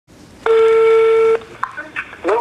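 Telephone ringback tone of an outgoing call heard through a smartphone's speaker: one steady tone lasting just under a second, followed by a brief blip.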